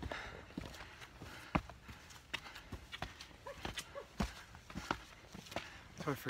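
Hiker's footsteps on rock steps and stony trail, irregular knocks about one or two a second.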